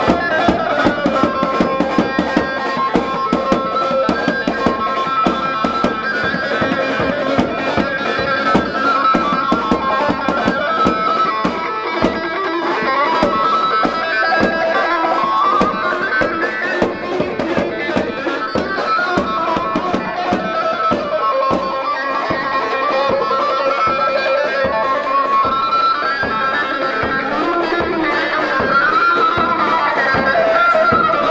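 Loud Kurdish halay dance music: a continuous reedy wind melody that winds up and down over a steady, driving drum beat.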